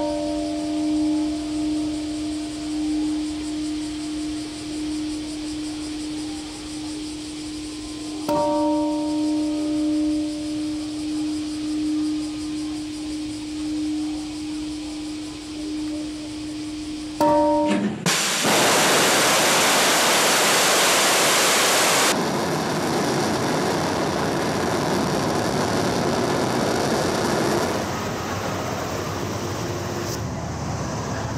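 Large bronze Japanese temple bell struck with a swinging wooden log: a deep, long-ringing hum carried over from one strike, then two more strikes about eight and seventeen seconds in, each ringing on and slowly fading. About eighteen seconds in, the ringing gives way to a loud, steady hiss that drops in level a few seconds later.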